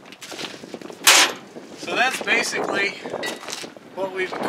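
A single short, sharp bang about a second in, followed by a man's voice.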